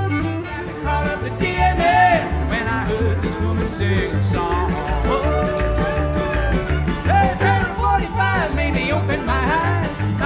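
Bluegrass band playing an instrumental break: fiddle lead over acoustic guitar, with upright bass keeping a steady beat.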